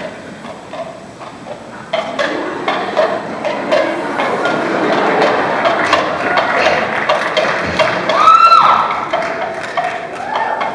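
Coconut shell halves knocked together to imitate a horse's hooves, a string of hollow clip-clops. A rising crowd noise builds under them from about two seconds in, and a short pitched call arches up and down near the end.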